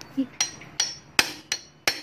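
A steel hand tool knocking against metal parts of a motorcycle engine's opened clutch side while it is being dismantled: a run of sharp metallic knocks, roughly three a second, each with a short ring.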